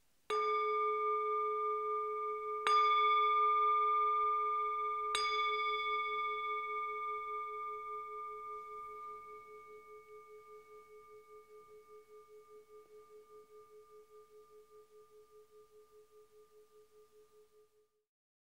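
A small Buddhist bowl bell (singing bowl) struck three times, about two and a half seconds apart, each stroke ringing on over the last. The final ring fades slowly with a wavering pulse until it is cut off near the end. The three strokes mark the close of the meditation session.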